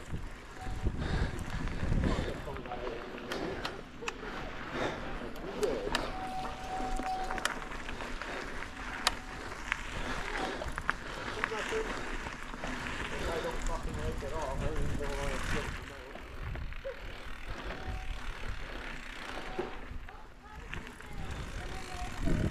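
Mountain bike rolling along a dirt singletrack: knobby-tyre noise and wind rumble on the handlebar-mounted camera, with scattered clicks and rattles from the bike over bumps.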